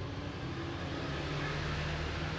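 Steady low hum with a hiss of background noise, unchanging throughout.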